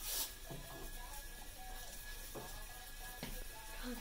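Faint music playing from a small speaker carried on a homemade robot car, too quiet to fill the room. A short burst of laughter comes right at the start.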